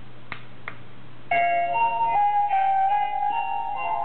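Two light clicks, then a short electronic chime melody of several clear notes from the small speaker of a 1/32 Aoshima radio-controlled Isuzu Erga model bus, starting about a second in, over a steady low hum.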